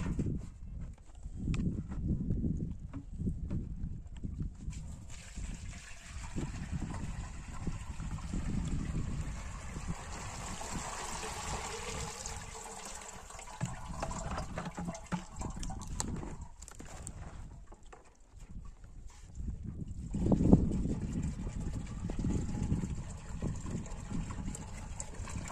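Buttermilk pouring from a plastic jerrycan into a cloth strainer over a pot. It is a steady pour from about five seconds in to about seventeen seconds. A low rumble runs underneath and is loudest about twenty seconds in.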